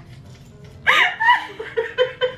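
A woman laughing out loud, starting about a second in and breaking into a string of short, quick bursts of laughter.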